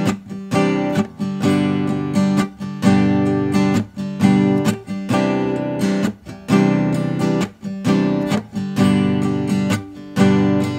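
Steel-string acoustic guitar strummed in a steady rhythm, chords ringing with short breaks as they change. It is heard as a test recording through a budget USB condenser microphone.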